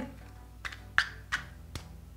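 Four short clicks and scrapes over about a second, from a protective cover being slid over the barrel of a cordless curling wand, with faint background music underneath.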